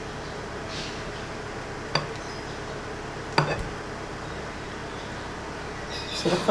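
Spatula folding flour into batter in a glass mixing bowl, knocking against the glass twice with short ringing clinks, about two seconds in and again a second and a half later.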